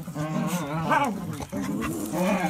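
A small grey-and-tan terrier vocalizing as it is rubbed on its back: two long, wavering grumbling sounds with a short break between them.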